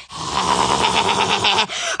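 A woman making a rough, breathy rasping noise with her voice, with a fast flutter through it, for about a second and a half before it stops.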